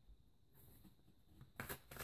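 Near silence: room tone, then a few faint clicks and rustles of tarot cards being handled, starting about three-quarters of the way in.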